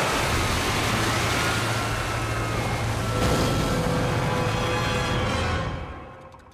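Cartoon sound effect of liquid gushing in torrents: a loud, steady rush that fades out near the end, mixed with music from the score.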